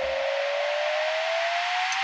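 Rising whoosh sound effect from a TV weather segment's animated intro: a steady rushing noise with a single tone gliding slowly upward.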